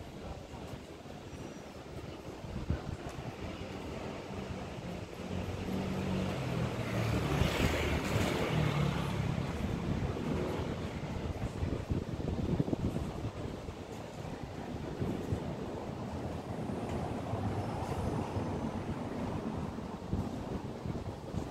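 Street ambience with wind on the microphone; a motor vehicle passes by, swelling to its loudest about eight seconds in and then fading.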